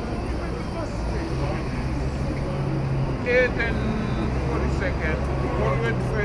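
Busy city street ambience: a steady low hum of idling traffic engines with snatches of passers-by talking, one voice clearest about three seconds in.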